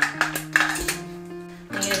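A few sharp clicks and clatters of hard plastic and metal as the broken tilt-wand mechanism is worked out of the blind's headrail, over steady background guitar music.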